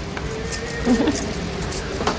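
Background music with the steady hum of a large lobby, and a short voice about a second in.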